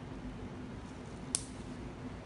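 Quiet room hum with one short, sharp plastic click about one and a half seconds in, from a syringe being worked at a dialysis catheter's luer connector as blood is drawn back and the syringe is twisted off.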